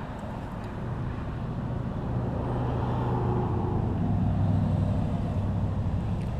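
A motor vehicle's engine hum, growing louder over several seconds and easing slightly near the end, as it passes by.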